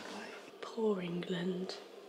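A woman speaking softly, close to whispering, with a short voiced phrase about a second in; the words are not made out.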